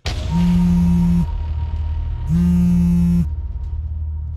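A mobile phone vibrating with an incoming call: two buzzes about a second long, a second apart, over a low steady music drone.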